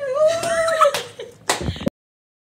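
A boy's high-pitched laugh, a drawn-out, wavering squeal, followed near the end by a short loud burst, after which the sound cuts off abruptly.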